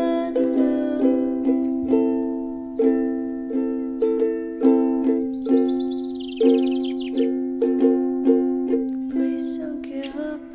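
Background music of a plucked string instrument picking out a gentle melody, note after note, with a brief falling run of high tones around the middle.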